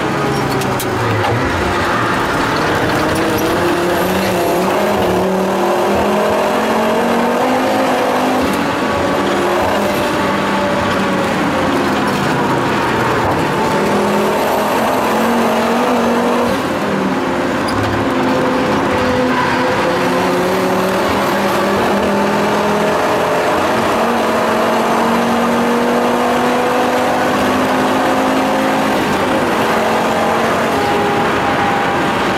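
Tuned Volvo 850 T5R's turbocharged inline five-cylinder engine, heard from inside the cabin, running hard. Its note rises and falls repeatedly as the car accelerates and lifts for corners.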